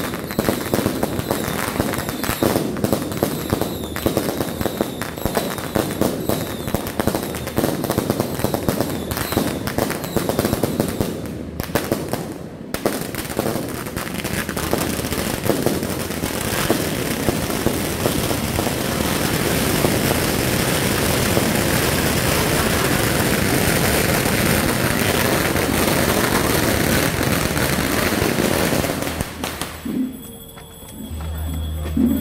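Strings of firecrackers going off in a rapid crackle of bangs, with a short break about twelve seconds in. After that the crackle grows denser and nearly continuous, then cuts off suddenly near the end.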